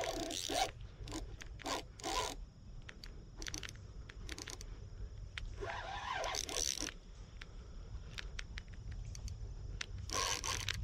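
Fishing reel drag giving line in short, irregular zipping bursts as a hooked salmon pulls against the rod.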